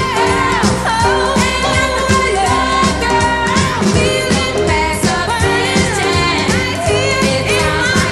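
A 1960s Motown pop recording: a singer's voice over a full band with a steady drum beat.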